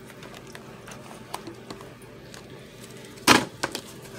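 Tarot cards being picked up and handled on a table: scattered soft clicks and taps, then one brief, loud burst of card noise a little over three seconds in.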